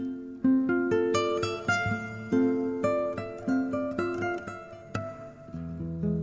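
Solo fingerpicked acoustic guitar playing a slow instrumental melody, single notes plucked and left to ring over chords, with deeper bass notes coming in near the end.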